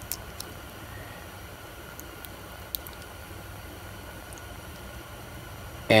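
Steady low room hiss and hum, with a few faint light clicks and ticks from fingers working small resin castings loose in a flexible silicone mold.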